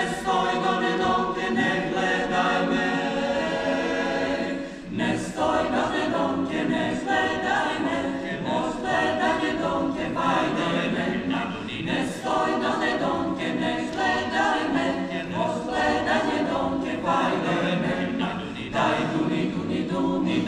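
Mixed choir singing a cappella, with a brief break between phrases about five seconds in.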